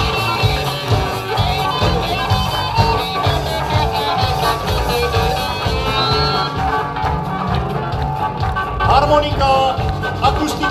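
Live rock and roll band playing, with an electric guitar picking a lead line over bass and drums; the guitar bends notes about nine seconds in.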